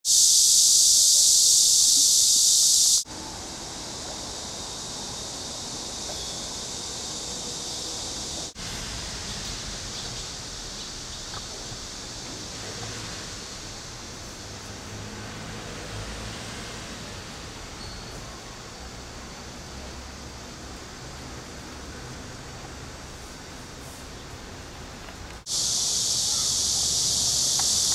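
Steady high-pitched insect drone, loud for about the first three seconds, then quieter with a low rumble underneath. The sound cuts off abruptly about three seconds in, briefly again near nine seconds, and rises back to full loudness near the end.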